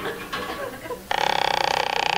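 Radio-drama sound effects: a few faint knocks and clanks, then about a second in a loud, rapidly buzzing ringing starts suddenly and keeps going, like an electric alarm bell or buzzer.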